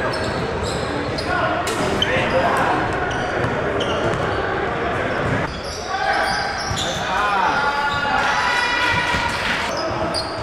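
Live basketball game sound on an indoor hardwood court: the ball bouncing, sneakers squeaking on the floor and players' voices, all echoing in a large gym.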